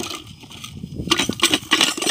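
Loose metal objects clinking and rattling as they spill out of a tipped clay pot onto dry ground, a quick run of clinks starting about a second in.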